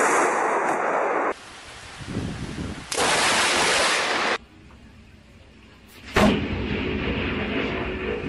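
Thunderstorm sounds cut together from several clips: stretches of loud wind and rain noise that start and stop abruptly, low rumbling, and a sudden loud boom about six seconds in that keeps rumbling for a few seconds.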